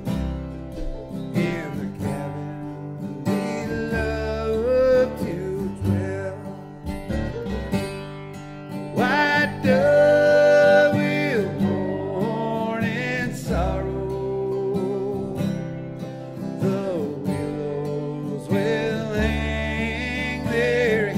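Bluegrass band music: acoustic guitar, banjo, mandolin and bass playing together.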